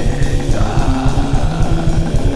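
Raw black metal: distorted electric guitar playing held notes over fast, dense drumming.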